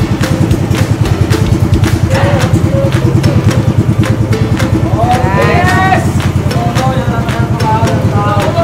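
Small outrigger boat's engine running steadily with a fast, even chugging beat, as the boat moves through a cave passage. Voices and a laugh come over it about five seconds in.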